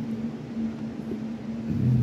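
A steady low hum, with a second, deeper hum joining near the end.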